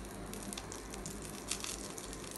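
Curry leaves frying in a little oil in a non-stick pan: a quiet, steady sizzle with faint crackles.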